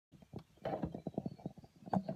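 Muffled, irregular rubbing and knocking from a hand-held phone being handled and adjusted close to its microphone.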